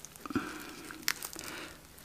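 Crispy baked pizza crust crackling faintly as a slice is pulled apart from the rest, with a few small clicks.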